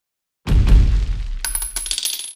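Logo sting sound effect: a deep low boom about half a second in that rumbles away, then a quick run of bright metallic clinks and rings from about a second and a half in, stopping abruptly.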